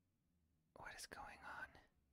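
A person whispering a few words to himself, faint and about a second long, starting near the middle.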